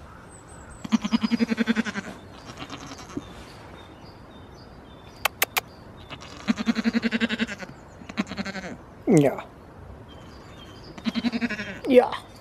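Goat bleating three times, each a quavering bleat of about a second, separated by a few seconds.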